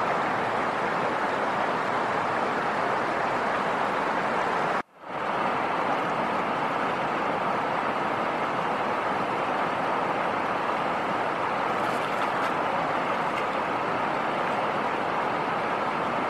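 Steady rush of river water flowing past an old breached stone weir. It cuts out suddenly for a moment about five seconds in, then returns.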